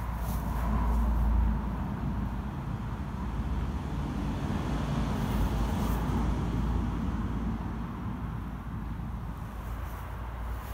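Steady low outdoor rumble with no distinct event, a little louder in the first second or so.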